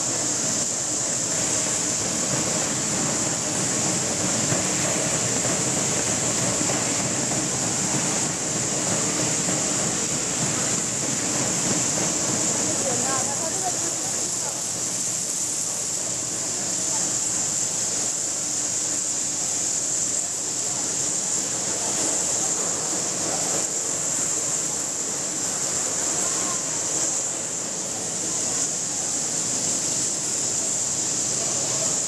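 Steady din of running food-processing machinery with a constant high-pitched hiss, unchanging throughout, and faint voices under it.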